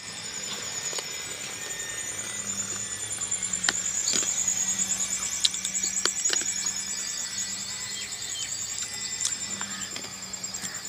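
A steady high-pitched pulsing trill of insects, swelling slightly in the middle, over a faint low hum, with a few light clicks.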